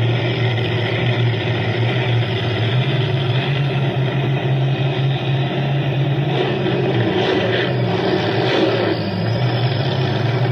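Drag-racing altered's big Hemi V8 idling loudly and steadily after its burnout, with small changes in pitch. It is heard as a livestream's audio played through computer speakers.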